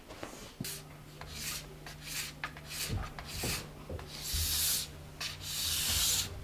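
A hand scraper drawn along a ski base in a series of scraping strokes, shaving off white material; the strokes grow longer and louder in the second half.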